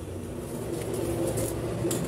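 A pencil scratching along a ruler on pattern paper as a line is squared across, over a steady low mechanical hum. The scratching comes in light strokes in the second half.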